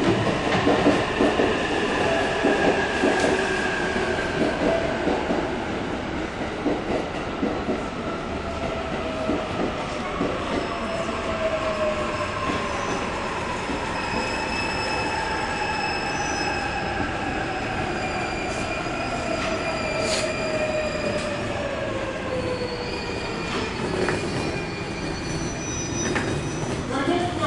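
JR East E531 series electric train slowing into the station: its motors whine in several tones that fall slowly and steadily in pitch as it brakes, over the rumble of the wheels. High, thin squealing tones join about halfway through, and the falling whine levels out near the end as the train comes to a stop.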